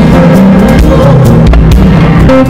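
A church worship band playing loudly: held chords over drum hits.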